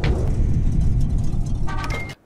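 Logo intro sound effect: a deep, steady, engine-like rumble, with a short chime-like tone near the end before it cuts off.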